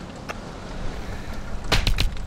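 Steady low rumble of a boat out on the sea, with two quick sharp knocks close together near the end.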